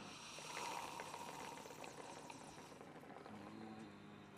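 Faint bubbling and gurgling of a hookah's water bowl as the smokers draw on the hoses.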